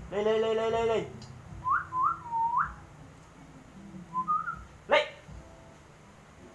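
Short whistled notes that slide upward, three in quick succession and then one more, following a loud drawn-out call about a second long at the start; a sharp rising chirp comes near the end.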